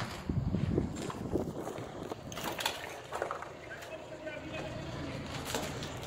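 Footsteps on gravel and concrete rubble, irregular and loudest in the first second, with faint speech partway through.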